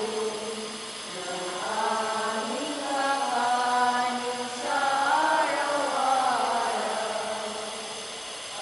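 Slow, chant-like singing of a prayer, with long held notes that glide from one pitch to the next.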